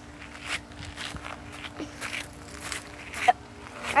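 Footsteps outdoors at a walking pace, about two a second, with a faint steady hum underneath.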